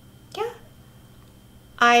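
A single brief, high-pitched call that rises and falls in pitch, about half a second in, over a faint steady room hum.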